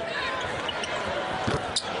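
Live basketball game sound: a basketball bouncing on the hardwood court and short high squeaks over steady arena crowd noise.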